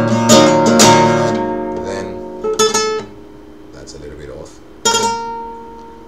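Nylon-string classical guitar: a few quick strokes at the start that ring out and fade, a short plucked figure about two and a half seconds in, then one more stroke near the five-second mark that rings on.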